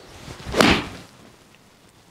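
Golf iron swishing through the downswing and striking a ball off a hitting mat: one rising whoosh that ends in a sharp strike about two-thirds of a second in, then fades away.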